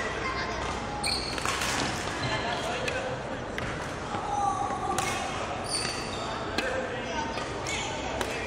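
Court shoes squeaking and feet thudding on a wooden sports-hall floor as a badminton player runs and lunges, with short high squeaks a few times and the hall's echo behind them.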